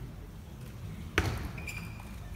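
Table tennis ball struck on a serve: one sharp click about a second in, followed by fainter ticks, over the low steady rumble of an arena crowd.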